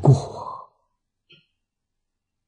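An elderly man's voice trailing off at the end of a spoken phrase, breathy like a sigh, then silence through the rest.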